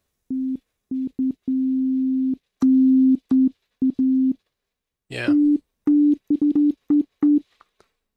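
Dull sine-wave synth tone triggered from a MIDI keyboard: the same note played over and over, some short, some held for about a second, at differing loudness, with gaps between.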